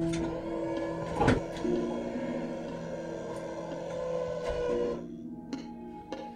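Film score with held low notes over a steady mechanical whirring noise. A sharp clank comes about a second in, and the whirring stops about five seconds in.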